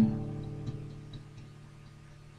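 Acoustic guitar chord struck with a sharp percussive hit right at the start, then left to ring and slowly die away, with a couple of light taps in the first second.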